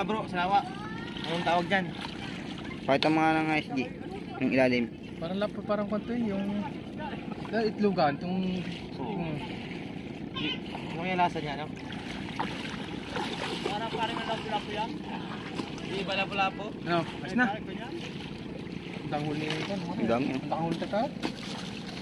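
People talking in short, broken exchanges over a steady background of wind and water noise.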